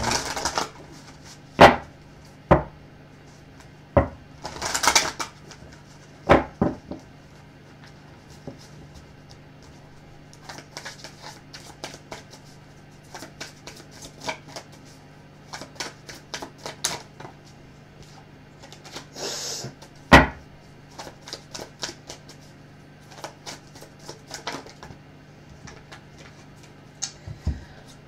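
A Crystal Visions tarot deck being shuffled by hand: irregular clicks and taps of cards knocking together and against the table, with a couple of brief riffling rushes.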